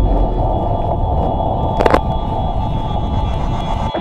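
Logo-intro sound design: a loud, steady low rumble with a faint held tone above it, broken by a sharp hit about two seconds in and another at the very end.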